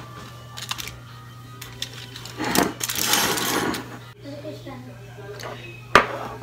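Roasted eggplant being handled on a foil-lined baking tray: light clicks, then a dense crinkling rustle of aluminium foil for about a second, with a sharp knock at the very end, over a steady low hum.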